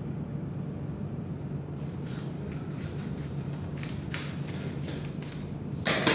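Scissors snipping through a paper sewing pattern, with a few short crisp cuts and paper rustles, and a louder paper rustle near the end as the cut piece is laid down on the table. A steady low hum runs underneath.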